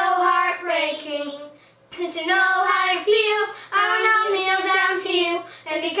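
A child singing a song, held melodic notes in several phrases with short breaths between them, the longest pause about a second in.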